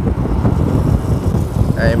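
Wind buffeting the microphone of a moving motorbike, a loud uneven low rumble, with the engine and road noise underneath.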